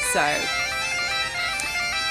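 Bagpipes playing a tune of held notes over a steady drone, loud and close. A short spoken "so" comes at the very start.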